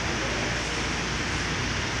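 Electric stand fan running: a steady whoosh of moving air with a low motor hum.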